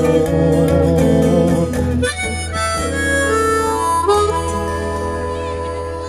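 Harmonica playing over a strummed acoustic guitar, the closing instrumental phrase of a folk-blues song. About two seconds in it moves up to a run of higher notes, and the sound slowly dies away toward the end.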